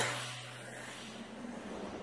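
Quiet stretch: faint hiss under a low steady hum that stops a little over a second in.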